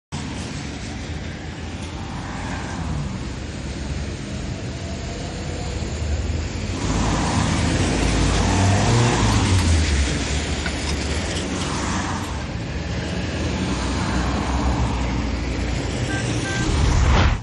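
Road traffic on a wet road: cars driving past with tyre hiss off the wet surface. It swells louder for a few seconds in the middle as a car passes close, and again more gently later.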